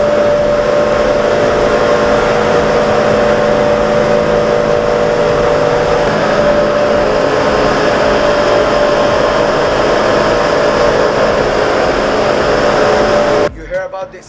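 Electric spice mill running loudly, grinding spice into powder: a steady motor hum with a dense grinding noise that cuts off suddenly near the end.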